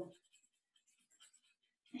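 Near silence with faint, repeated scratching of coloring on paper.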